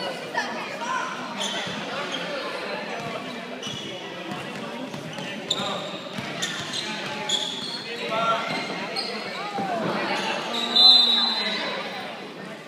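Basketball game in a gym: a ball bouncing on the hardwood court amid voices from the sideline, with a brief loud, high-pitched sound near the end.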